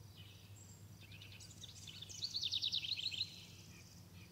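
Faint birdsong: a bird sings one rapid, trilled phrase of high chirps over a low steady hum.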